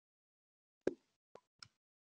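Near silence on a video call, broken by three short clicks a little under a second in, the first the loudest and the other two fainter and closer together.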